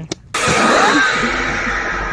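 A short laugh, then a loud burst of hiss-like noise that starts suddenly about a third of a second in.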